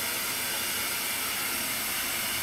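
Television static from a CRT set showing snow: a steady, even hiss of white noise.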